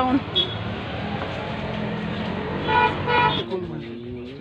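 Busy street noise with a vehicle horn sounding two short toots about three seconds in.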